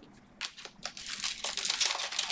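Foil wrapper of a Panini Select trading card pack crinkling as it is handled and torn open, beginning about half a second in as a dense run of crackles.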